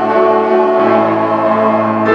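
A mixed choir singing with piano accompaniment, holding long sustained notes.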